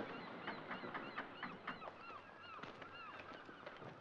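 Liquid glugging out of a bottle as a drink is poured into mugs: a quick run of short gurgles for about three seconds, with a few light clinks.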